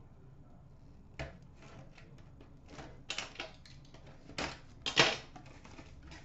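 Packaging being torn open and handled: a cardboard hockey card box opened by hand, with rustling and sharp crackles, the loudest about a second in and then in a cluster between three and five seconds in.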